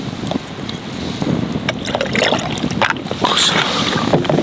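Whisky poured from a large bottle into a tall glass packed with ice, the liquid splashing and gurgling over the ice, with a campfire crackling in sharp, irregular pops.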